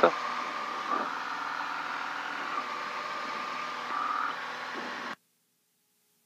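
The cabin drone of a Piper Saratoga II TC's turbocharged piston engine and propeller in cruise, a steady hum with several held tones, picked up through the intercom headset microphones. It cuts off suddenly about five seconds in.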